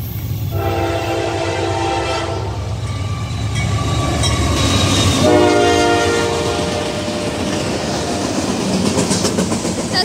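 Norfolk Southern GE AC44C6M diesel locomotive passing at speed, sounding its air horn in two long blasts for the grade crossing over the steady rumble of its engine; the second blast, as it goes by, is the loudest. Then freight cars follow, their wheels clattering over the rails.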